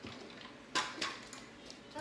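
Two short clattering knocks, about a quarter second apart, a second in: a kid's kick scooter knocking on a hardwood floor as it is handled.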